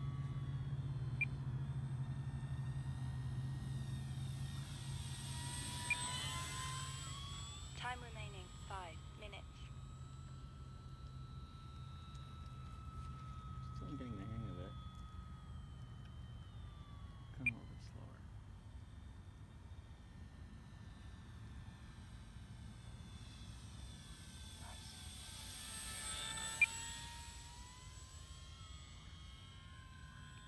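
Electric motor and propeller of an E-flite PT-17 radio-controlled biplane whining as it flies circuits, its pitch sliding as it passes close about six seconds in and again near the end. A low steady hum underneath fades away over the first half, and there are a couple of short clicks.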